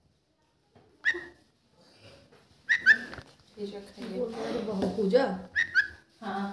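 A bulbul calling: short, sharp chirps that drop in pitch, one about a second in, a quick pair near the middle and another pair near the end. A low voice murmurs between the chirps.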